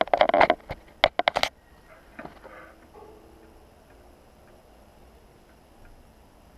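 Handling noise from an action camera: a quick run of sharp clicks and rubbing as fingers touch the camera body in the first second and a half. After that there is only faint, steady room tone.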